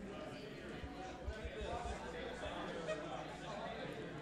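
Indistinct chatter of many voices in a large indoor hall, with two short taps about a second and about three seconds in.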